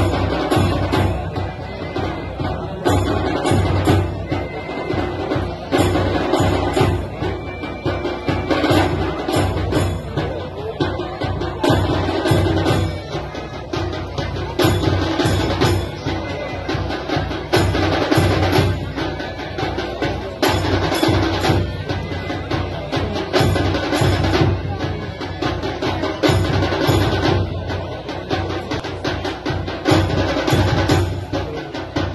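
Loud drum-led percussion music with a steady, repeating beat.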